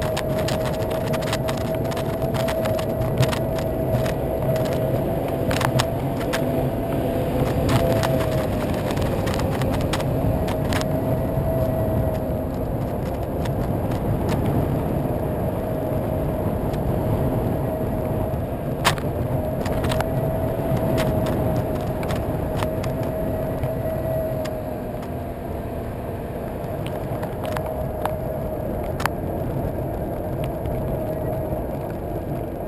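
Solowheel self-balancing electric unicycle riding along wet asphalt: its hub motor gives a steady whine that wavers slightly in pitch over a constant low tyre and road rumble. Scattered sharp ticks and knocks run throughout, and the sound is a little quieter in the last few seconds.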